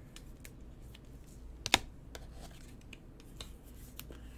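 Light scattered clicks and taps from trading cards and their plastic frames and packaging being handled, with one sharp snap about 1.7 s in.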